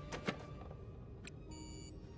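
Faint clicks from a touchscreen coffee machine being pressed, then a short electronic beep near the end: the machine's alert that it needs coffee beans.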